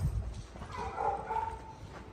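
A small dog gives one short, high whining yelp about a second in. A low thump sounds at the very start.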